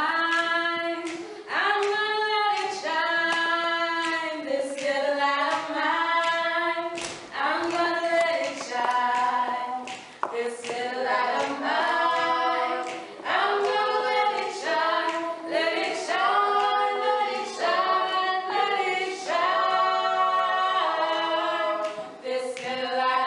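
A small mixed group of men's and women's voices singing a cappella in harmony, in sustained phrases with short breaks between them.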